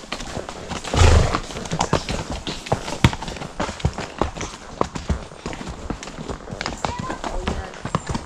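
Horses' hooves clip-clopping at a walk on a stony track, an irregular run of sharp knocks. About a second in there is a short, louder rush of noise.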